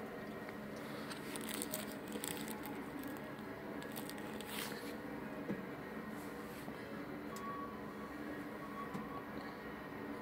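A dog nosing around for scattered treats: faint sniffing and rustling with a few short crunches, the sharpest between about one and a half and two and a half seconds in and again near the middle.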